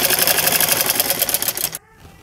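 Vintage black domestic sewing machine running fast, its needle stitching through a folded seam of kurti fabric in a rapid, even run of ticks. It stops abruptly near the end.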